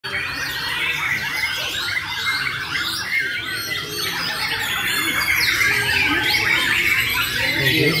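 Many caged white-rumped shamas (murai batu) singing at once in a contest gallery: a dense, unbroken chorus of rapid overlapping whistled phrases that rise and fall. People talk underneath, with a voice near the end.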